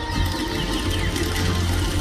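Cinema pre-show animation soundtrack played over the auditorium's speakers: music with deep bass and several quick falling-pitch sound effects.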